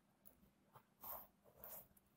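Faint pen strokes on paper: two short scratches about a second in, as a box is drawn around a written line.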